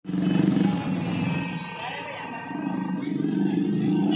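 A loud voice with long, drawn-out held tones. It starts abruptly right after a cut and eases briefly in the middle.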